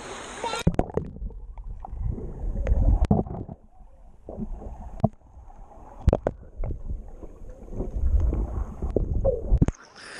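River water heard with the microphone submerged: a muffled low rumble and gurgling with scattered sharp clicks and knocks, all the high sound cut off. It goes under about half a second in and comes back up just before the end, when the open-air hiss of the stream returns.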